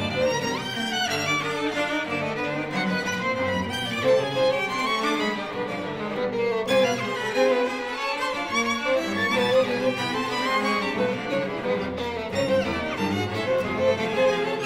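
A string quartet of two violins, viola and cello playing a modern classical work, many bowed lines overlapping without a break.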